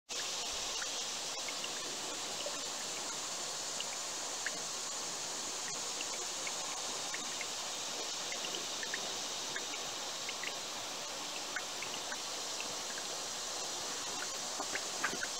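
Tiny spring trickling out of a bank and over rocks: a steady hiss of running water with small high plinks scattered all through.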